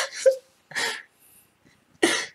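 A man's brief mock sobbing: a short whimper and a breathy sob within the first second.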